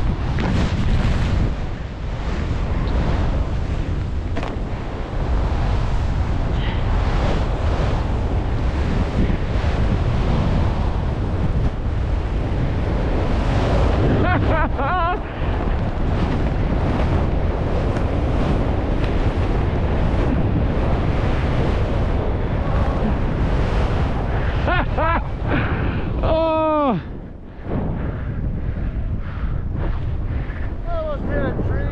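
Wind noise on a ski camera's microphone mixed with skis hissing through deep powder on a fast run, a steady loud rush. A couple of short whoops come through midway, and near the end a long yell falls in pitch while the rush briefly drops away.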